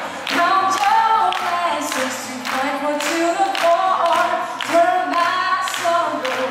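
A woman singing a pop-rock cover live into a microphone over an acoustic guitar, with a regular percussive beat about twice a second.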